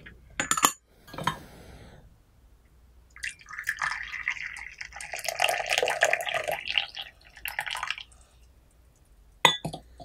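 Tea poured from a glass pitcher into a small glass cup: a trickling stream that runs for about four seconds in the middle. There are sharp glass clinks about half a second in and again near the end.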